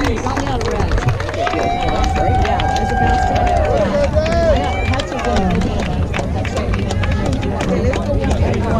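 Several people talking at once in an outdoor crowd, the voices overlapping into unclear chatter, over a steady low rumble with scattered short sharp clicks.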